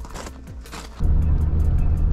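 Inside the cab of a Ram 3500 heavy-duty pickup on a test drive: a loud, steady low rumble of engine and road noise cuts in suddenly about a second in, with the new ball joints and axle U-joints running without any odd noise. Before it there is quieter background music.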